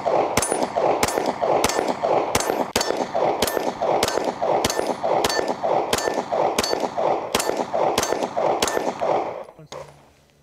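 Taurus G3 9mm pistol firing a steady string of Federal Syntech 124-grain rounds, about two to three shots a second, each shot echoing. The firing stops about nine seconds in.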